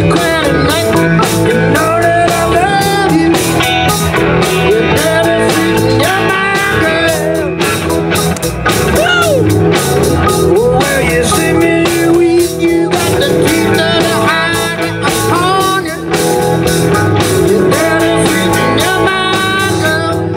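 Live blues-rock band playing a song: electric guitars over a drum kit and keyboard, loud and steady throughout.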